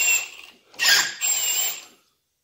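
Cordless drill spinning a #5 E-Z Chamfer countersink tool against the end of a hardened steel pin: a noisy cut with a thin high squeal, in two passes, the second about a second long, before the drill is pulled away.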